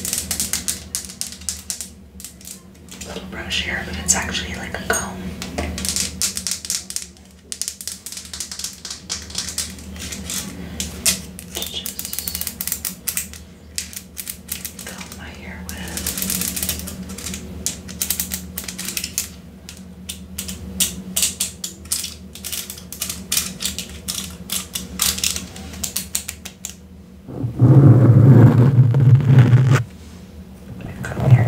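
Long fingernails plucking and tapping along the teeth of a plastic wide-tooth comb: quick, irregular runs of small clicks close to the microphone. For the last couple of seconds a loud low rubbing noise takes over.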